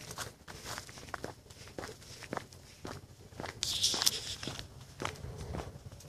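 Footsteps through dry leaves and dead grass: irregular crackles and steps, with a brief louder rustle about four seconds in.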